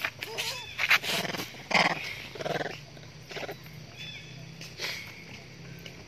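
Long-tailed macaques calling: a string of short harsh calls and squeals, loudest in the first three seconds, then a few fainter ones, over a low steady hum.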